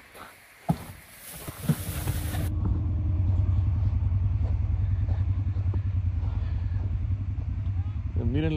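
Side-by-side UTV engine running with a steady low rumble that comes up about two seconds in and holds, preceded by a couple of short knocks.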